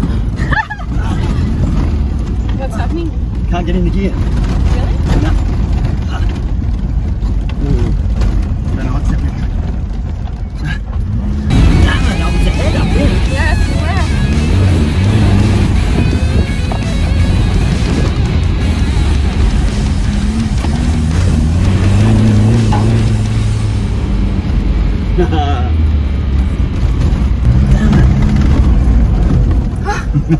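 Land Rover Defender 130 driven hard on a gravel rally course, heard from inside the cab: engine running under load with tyre and gravel noise, mixed with background music. The sound changes abruptly about eleven seconds in.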